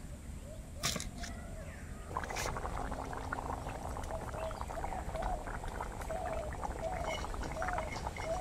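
Fish curry bubbling in a metal pot over a fire: a dense, steady crackle of popping bubbles that starts about two seconds in, after a couple of sharp clicks.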